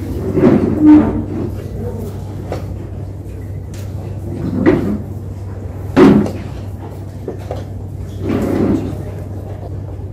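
Chess pieces knocked down on a wooden board and chess clock buttons pressed during a rapid game: a few sharp knocks, the loudest about six seconds in, over a steady low hum and a murmur of voices.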